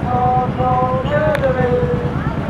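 Military vehicle engine running with a deep, steady rumble as it passes in a parade, with voices calling out over it.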